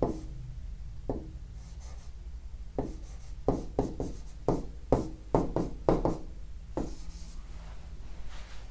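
Pen writing on a board: short, sharp strokes and taps, a few at first, then a quick run of about a dozen in the middle as a line of working is written out.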